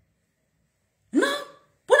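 A woman's voice: after a second's pause, a short vocal sound, then speech resuming near the end.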